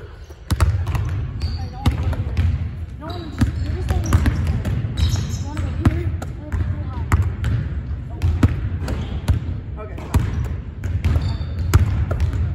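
Basketballs bouncing on a hardwood gym floor and smacking into hands as they are passed and caught: irregular sharp thuds, several a second, with voices in the background.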